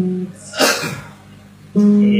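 A guitar played note by note: one plucked note rings and fades at the start, and a louder note sounds near the end and is held. About half a second in there is a short hissing burst.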